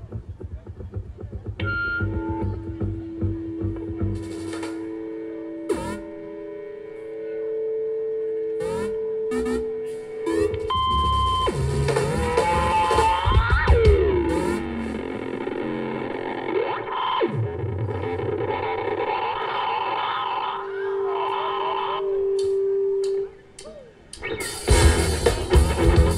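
Live rock band opening a piece with a free-form effects-laden intro of held electric guitar and keyboard tones and sliding pitches, swelling in loudness. After a brief drop near the end, the full band with drums comes in loudly.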